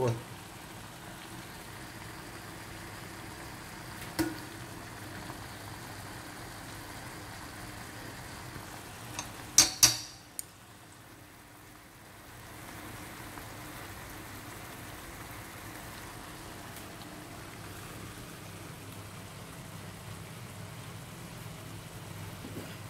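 Whole freshwater shrimp frying in a pan, a steady sizzle and bubble as they cook in the liquid they give off. There is a sharp knock about four seconds in and a louder cluster of knocks, like a utensil against the pan, about ten seconds in. After the knocks the sizzle dips for a couple of seconds.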